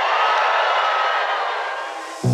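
Electronic music with all the bass cut: a noisy wash with a faint held tone, slowly fading down.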